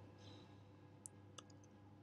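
Near silence with a few faint computer-keyboard keystrokes, short sharp clicks about one to one and a half seconds in.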